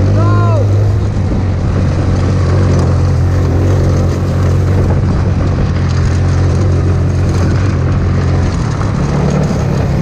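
Hammerhead GTS 150 go-kart's 150cc four-stroke engine running steadily under throttle while driving through grass, heard loud from the driver's seat.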